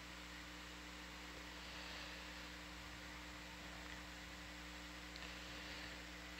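Steady faint hiss with a low electrical hum underneath: the background noise of the audio line.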